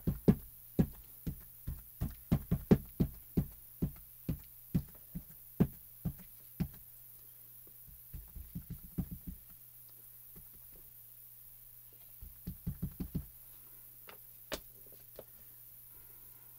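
An ink pad and a rubber stamp on a clear acrylic block being tapped together to ink the stamp: a run of sharp knocks about two a second for several seconds. Later come two shorter, quicker bursts of lighter taps and a single knock near the end.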